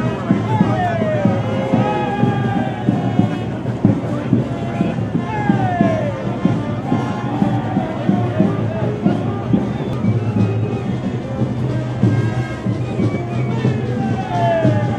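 Brass band playing a fandango: horns over a steady drum and cymbal beat, with a few falling slides in pitch, and crowd voices underneath.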